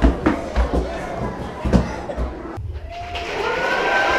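Knocks and thumps from a GoPro camera jostled as it is carried down wooden stairs, over background voices. About two and a half seconds in, the sound changes to children's voices.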